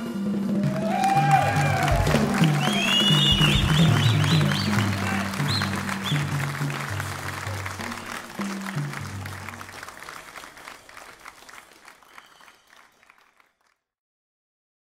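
Live audience applauding and cheering, with whoops and shrill whistles in the first few seconds. The applause then fades out gradually toward the end.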